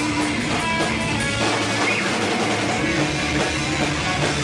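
Rock music with guitar and a drum kit playing steadily, a dense full-band sound with no break.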